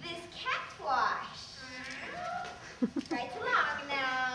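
Children's voices imitating cats, a run of short, high-pitched meows and mews with rising-and-falling pitch.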